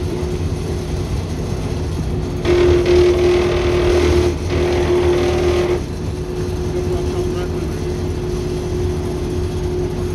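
Crane Sithe submersible chopper pump running with a steady electric-motor hum, churning the water in its test tank. About two and a half seconds in, a louder rushing noise joins for about three seconds, while the pump's hum stays at the same pitch.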